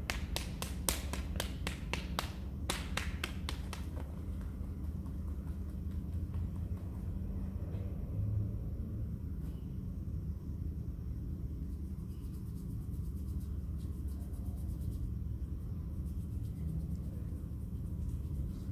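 Sharp clicks or snaps from hands working a man's hand and fingers during a massage. The clicks come in two quick clusters within the first four seconds, with a few fainter ticks later, over a steady low rumble.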